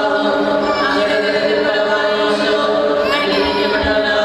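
Choir singing with long, held notes.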